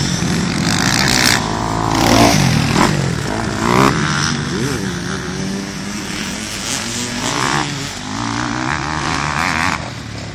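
Several motocross dirt bikes revving around a dirt track, their engine notes overlapping and repeatedly rising and falling in pitch as the riders accelerate and back off.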